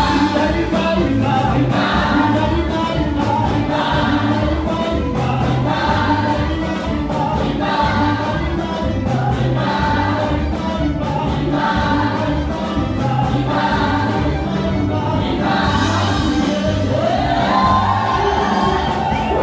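Live gospel music: a choir singing together over a band with a steady, regular beat, loud in a large hall.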